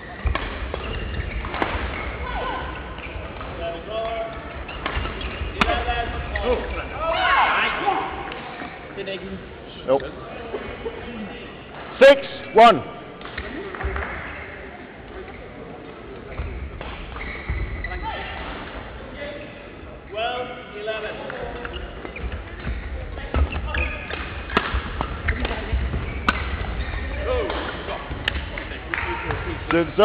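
Badminton rallies in a large sports hall: rackets striking the shuttlecock, footwork on the court and players' calls, with play on neighbouring courts behind. Two very loud sharp sounds come half a second apart about midway.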